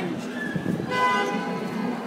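A short, steady horn toot about a second in, lasting under a second.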